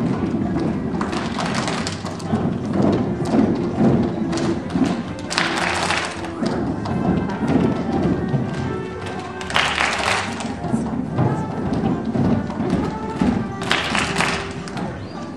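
A group of kindergarten children singing a song over music, with hands clapping and thuds throughout and three louder bursts about five seconds in, about ten seconds in, and at the very end.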